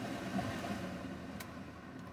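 Steady low road and engine noise inside a car's cabin while driving, with one faint click about one and a half seconds in.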